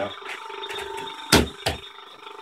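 Two sharp knocks about a second and a half apart from the first, the first much the louder, over a steady faint machine hum.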